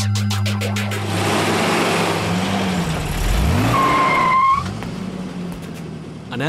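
Movie sound effect of a car rushing in with pitch glides and skidding, with a short tire squeal about four seconds in, after which the noise drops away. A steady low music drone fades out about a second in.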